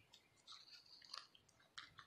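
Faint crunching and crackling of moist potting soil as fingers press into it around a tulip bulb in a plastic pot, with a few small clicks. A faint high note is held for under a second, about half a second in.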